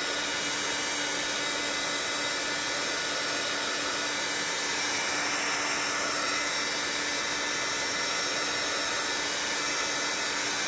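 Handheld craft heat gun running continuously, a steady blowing rush with a constant motor hum.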